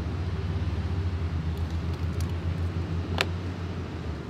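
Steady low outdoor rumble with a light hiss, and a single sharp click about three seconds in.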